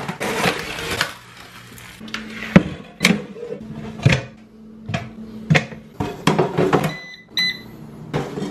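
Knocks and clunks of plastic takeout containers and a PowerXL air fryer's basket being handled and loaded. Near the end come two short electronic beeps from the air fryer's touch controls as the temperature is set. Background music with a steady low note plays underneath.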